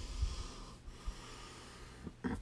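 A person breathing out noisily through the nose close to the microphone: one breath of about a second.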